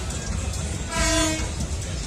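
A single steady horn toot, about half a second long, sounds about a second in over a constant low background rumble.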